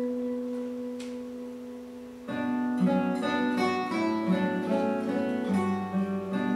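A held keyboard note fades over the first two seconds, then acoustic guitars and bass come in together with plucked notes and chords in a live instrumental ensemble.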